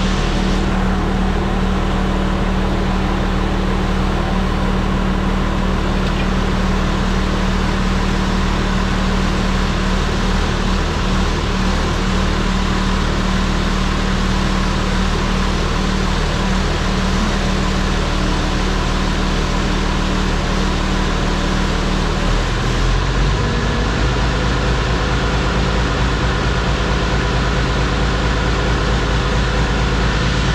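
Oliver 1850 tractor engine running steadily while its hydraulic pump pumps the hydraulic oil down and out through a hose into a bucket. The engine note changes about 23 seconds in.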